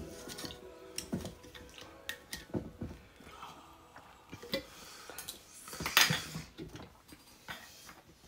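Metal lid of a glass Ball mason jar being unscrewed and handled: scattered small clicks and scrapes of metal on glass, with one louder knock about six seconds in.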